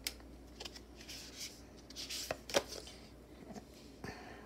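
Tarot cards being handled and laid down on a cloth-covered table: soft swishes of card against card and several light taps.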